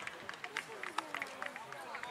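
Faint, indistinct voices of players and onlookers calling out around an outdoor football pitch, with scattered short clicks.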